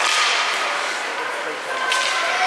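Ice hockey stick smacking the puck with a sharp crack at the start and another sharp click near the end, over the steady scrape of skates on the ice and faint children's voices in the rink.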